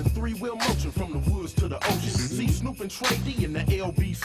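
Hip hop music: a rapped vocal over a heavy bass line and drum beat.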